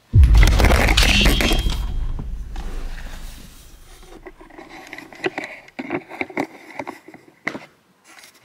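Handling noise from the camera being grabbed and moved about: a loud rumbling scrape right at the start that fades over a few seconds, then a run of light taps and clicks on the body of the camera.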